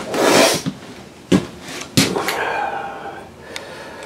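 Footsteps and camera-handling noise inside a small room: a brief rubbing rush, then a few light knocks.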